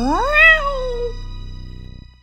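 A single cat meow, rising then falling in pitch and lasting about a second, over background music that fades out.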